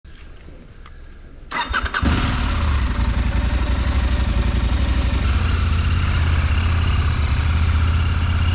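KTM Adventure motorcycle's parallel-twin engine started with the electric starter: a brief crank about a second and a half in, catching at about two seconds, then running steadily.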